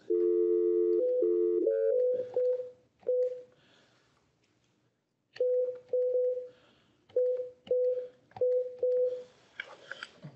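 A telephone being dialed: a steady dial tone for about two seconds, then a string of short keypad beeps, one per digit, in two runs with a pause of about two seconds between, as a phone number is entered.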